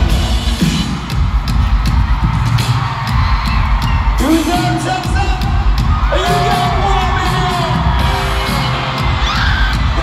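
Live pop band music in an arena, heavy bass and drums with frequent hits. From about four seconds in, voices slide through long held notes over the band, with crowd whoops.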